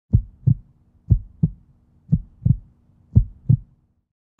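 A heartbeat: four low double thumps, lub-dub, about one a second.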